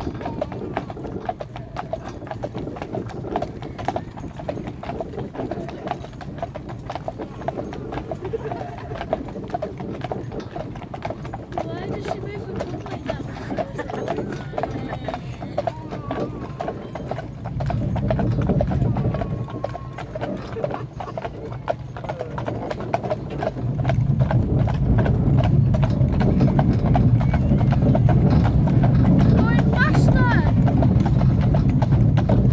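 Hooves of a pair of cart horses clip-clopping at a steady walk on a paved road. A low rumble swells briefly a little past halfway and grows louder over the last few seconds.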